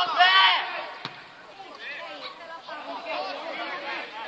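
Men shouting and calling out on a football pitch, with one loud shout over the first second and scattered calls after it. A single sharp knock about a second in.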